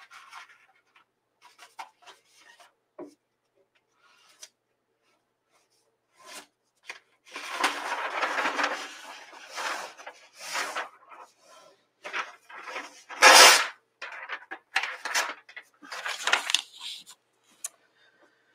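Sheets of paper from a large roll being handled: rustling and crinkling in a run of bursts that starts about six seconds in, with one sharp, loud burst about halfway through.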